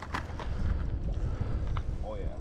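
Wind buffeting the microphone as an uneven low rumble, with a couple of faint clicks, one just after the start and one near the end.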